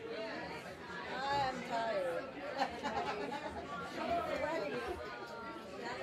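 Chatter of many people talking at once in a crowded room, overlapping voices with no single clear speaker.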